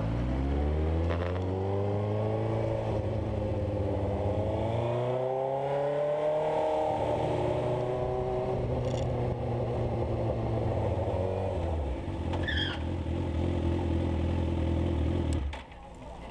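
Suzuki sport motorcycle engine accelerating up through the gears. Its pitch climbs, drops at each upshift and holds steady between shifts, then the sound cuts off sharply just before the end.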